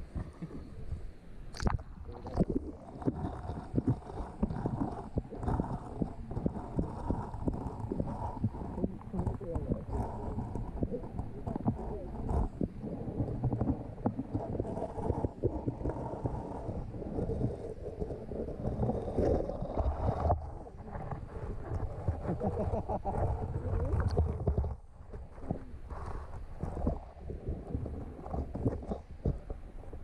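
Muffled underwater sound from a camera submerged inside a hinaki eel net: a dense run of irregular knocks and thumps over a low rumble, as eels move about and bump the net and the camera. It is somewhat quieter for the last few seconds.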